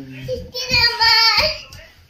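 A small child singing in a high voice, one long wavering phrase through the middle that fades out near the end.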